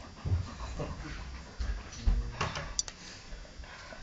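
Two dogs play-fighting on a rug: panting and scuffling, with a few soft thumps and a couple of sharp clicks around the middle.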